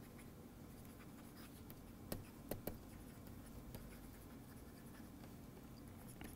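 Faint scratching and tapping of a stylus writing on a pen tablet, with a few sharper ticks about two to three seconds in, over a low steady hum.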